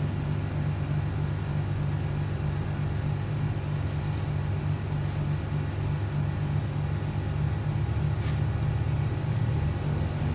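A steady low background hum, with a few faint light taps of a palette knife dabbing paint on canvas.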